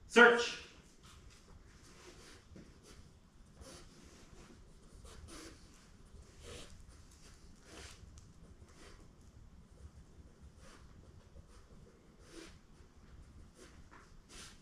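A brief loud voice-like call right at the start, then a puppy sniffing in faint, scattered short bursts as it searches scent tins on a concrete floor.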